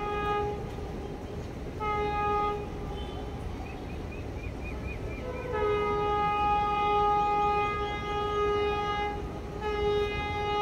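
Horn of an approaching train that is out of sight: a short blast about two seconds in, then a long blast of about four seconds that starts a step higher and settles, over a low steady rumble.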